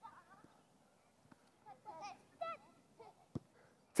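Faint, distant children's shouts and calls during a youth football game, with two brief knocks of the ball being kicked, one about a second in and one near the end.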